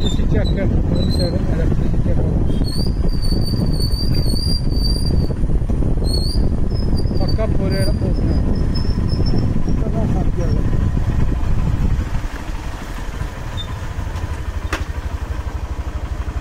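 Rumble of a vehicle's engine and road noise while moving, which eases about three-quarters of the way through to a quieter, even engine beat. A thin, high wavering whine comes and goes during the first half.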